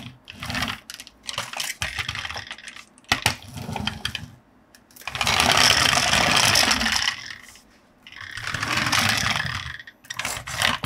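Plastic wheels of a small toy skateboard carrying an action figure, rolling over a ridged brick-pattern play surface as it is pushed back and forth. There are short runs at first, a sharp click about three seconds in, then two longer, louder runs, the loudest from about five to seven seconds in.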